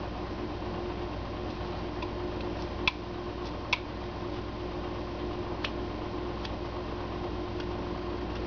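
Steady room hum with a faint held tone, and a few light, sharp clicks scattered through the middle.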